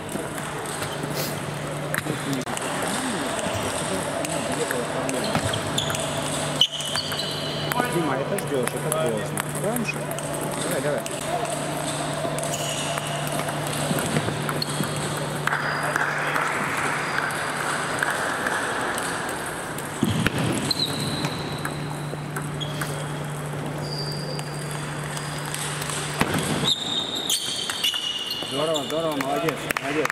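Table tennis balls clicking on bats and tables in a sports hall, scattered single ticks and a quick run of them, over background voices and a steady low hum.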